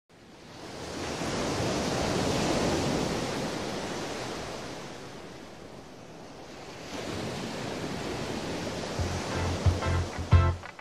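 Ocean surf: waves breaking and washing in, the rush swelling to a peak about two seconds in, ebbing, then building again. Music with a low bass beat comes in near the end.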